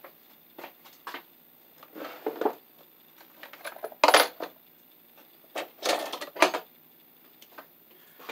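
Metal hand tools clinking and rattling as they are handled: a string of separate clicks and short clatters, the loudest about four seconds in and another cluster around six seconds.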